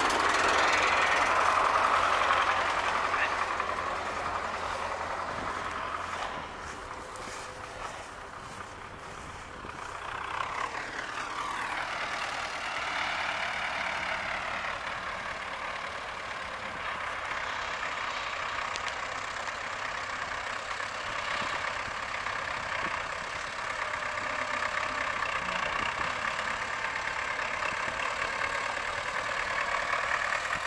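MTZ-80 tractor's four-cylinder diesel engine running during front-loader work, its pitch rising and falling partway through as it revs.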